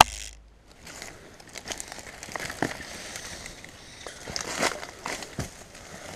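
A sharp click right at the start, then dry plant stems and leaves rustling and crackling irregularly as someone pushes through undergrowth on foot.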